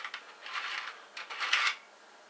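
Metal clinking and scraping in two short bursts as a steel AK muzzle brake is worked against the threaded muzzle of an AK-pattern rifle, which it does not fit.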